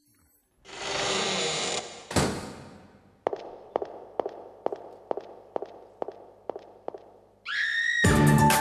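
Intro of a song's backing track in a reverberant hall: a short hiss, then one hard hit that rings out, then an even tick about twice a second until the full music comes in near the end.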